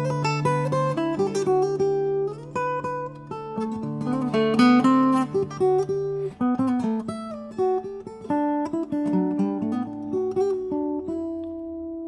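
Steel-string acoustic guitar fingerpicked in drop D tuning: a melodic line of plucked notes over ringing bass notes. Near the end it settles on a chord left ringing.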